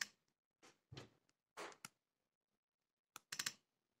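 Near silence with a few faint clicks and taps from fingers handling an iPhone 6s: single clicks about a second in and again shortly after, then a quick cluster of clicks near the end.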